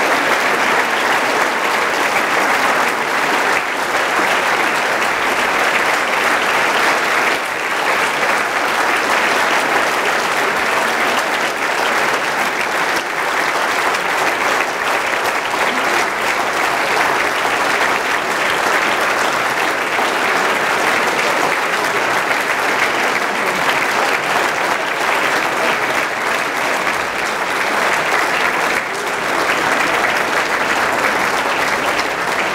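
A large audience of several hundred people applauding a speech, steady and unbroken for a long stretch.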